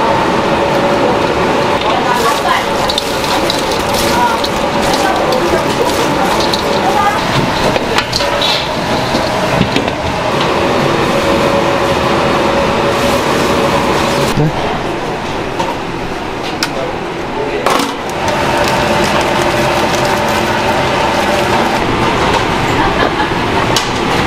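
Commercial kitchen ambience: a steady roar of ventilation and burners with background voices and scattered clicks of utensils. Fried chicken is being tossed by hand in sauce in a stainless-steel bowl.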